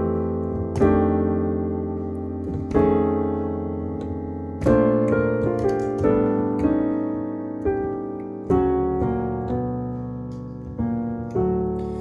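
Piano playing solo jazz chord voicings: a chord struck every second or two and left to ring and fade, with a quicker run of notes about five to seven seconds in.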